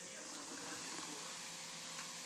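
Vinegar poured onto baking soda in a plastic jar, the mixture fizzing with a steady, soft hiss as it foams up and gives off carbon dioxide.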